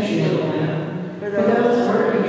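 A man's voice in continuous phrases, with a short pause a little after the middle.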